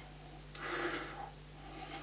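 A man sniffing whisky from a nosing glass held under his nose: one drawn-out inhale through the nose about half a second in, then a fainter breath near the end.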